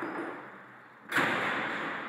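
A heavy iron-and-glass double door slams shut about a second in, its sound echoing and fading slowly. Before it, the fading tail of the song dies away.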